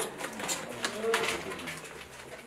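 A woman's voice, talking in a small room.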